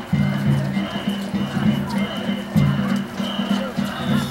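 Danjiri festival music: a quick, repeating beat of percussion with voices over it, and a steady high ringing.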